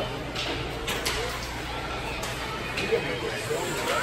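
Ice rink ambience: faint background voices and children's chatter over a steady low hum, with a few sharp clicks scattered through.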